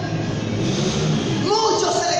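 Speech: a man's voice preaching through a handheld microphone and loudspeakers, with a rough, noisy stretch before clearer speech resumes.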